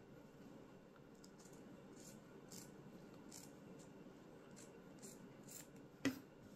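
Scissors snipping through cotton drill fabric strips, as faint, short snips repeated irregularly about half a dozen times over near-silent room tone.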